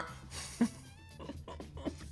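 A brief, soft, high-pitched laugh from a man, over quiet background music.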